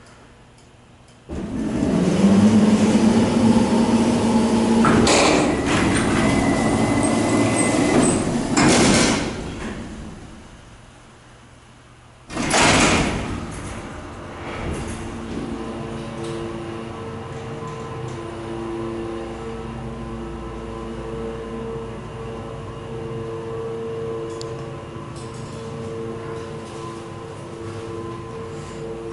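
Freight doors of a hydraulic freight elevator closing: a loud, steady mechanical run of about eight seconds with a low hum, starting abruptly. About three seconds after they stop comes a sudden jolt as the car starts, then a steady hum with a couple of faint steady tones while the hydraulic elevator travels.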